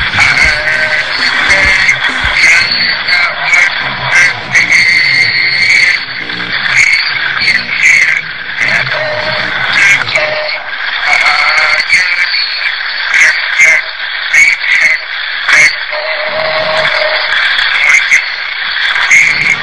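A song with a rasping, screaming vocal meant to sound like the tormented souls of hell, over a backing track. The low part of the accompaniment drops away about halfway through.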